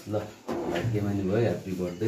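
A man talking: only speech.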